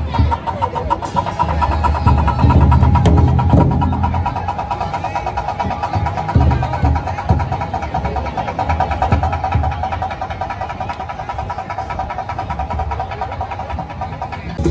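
Fast, continuous drum roll on large festival drums, with a steady high ringing tone above it; the low booming is heaviest in the first few seconds, then the roll eases a little.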